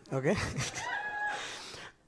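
A short spoken word into a microphone, then faint crowd noise from the hall with a single high held call, like a shout or whoop from the audience, fading away.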